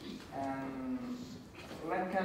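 A man's voice holding one long, level "uhh" for nearly a second, a hesitation sound in speech.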